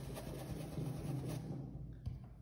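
Paintbrush working white paint onto fabric, a faint scratchy rubbing that dies away about one and a half seconds in.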